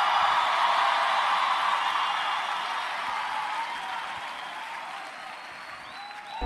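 A congregation applauding and cheering after being urged to clap and shout hallelujah. The clapping and cheers fade away gradually.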